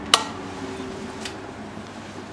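A single sharp click just after the start, then faint steady background noise with a low hum.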